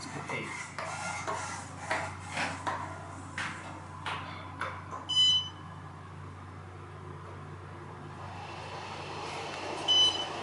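Inside an Otis Series 5 elevator car: button clicks and knocks over a steady low hum, then a short electronic beep about five seconds in. A rising rush of noise builds near the end, and another beep sounds at the very end.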